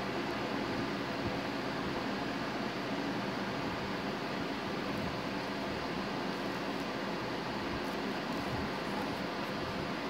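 Steady hiss of background room noise, even throughout, with no distinct events.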